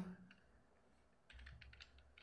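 Faint keystrokes on a computer keyboard, a quick run of taps starting a little past halfway through, after a near-silent first second.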